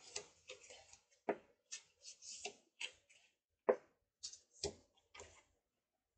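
Thick white cardstock being handled by hand over a scoring board: light rustling, with a few soft taps about a second apart.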